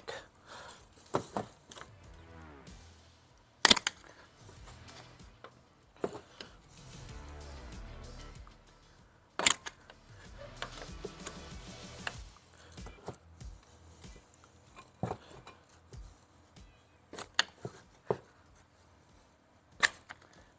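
Screwdriver levering between a brake pad and the caliper to push the caliper piston back, giving sharp metallic clicks and knocks every few seconds with quieter working sounds between.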